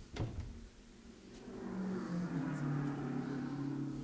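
Two sharp knocks, then a vintage racing car's engine running from about a second and a half in, its pitch dropping a little, heard from a film soundtrack played over room speakers.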